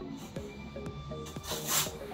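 Background music with a steady beat. Near the end, a brief scratchy rustle rises over it.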